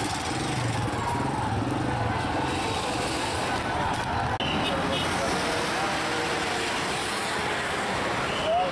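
Busy street traffic: vehicle engines running and passing, an engine's low hum strongest in the first few seconds, over a steady wash of street noise.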